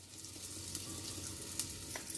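Hot oil sizzling softly and steadily in a small kadai as dried red chillies and asafoetida (hing) fry for a tempering, with a few faint crackles.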